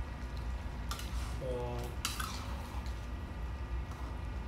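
A metal spatula clinking against a wok twice, about a second apart, as a thick coconut-milk stew is stirred, over a low steady hum.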